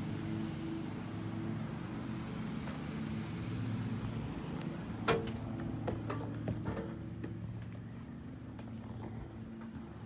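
An engine running at a steady idle, a constant low hum, with a few light knocks, the loudest about five seconds in.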